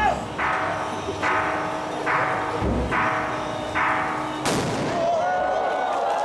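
One sharp, loud blast of a ceremonial departure cannon (qǐmǎ pào, 起馬炮) about four and a half seconds in, ringing briefly after the crack. Before it, short bursts of procession music repeat a little faster than once a second.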